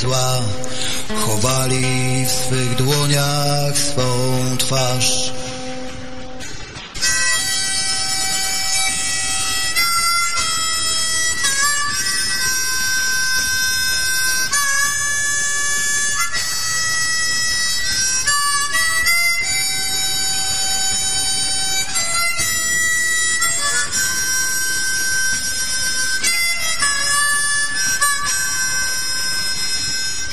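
A blues recording with a harmonica solo: long, held harmonica notes shifting in pitch every second or two over the band. For the first five seconds lower notes carry the tune, and the level dips briefly just before the harmonica comes in.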